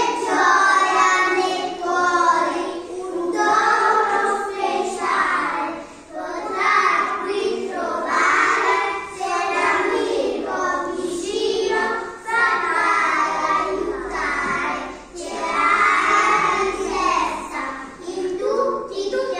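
A group of young children singing together in phrases, with short dips between lines.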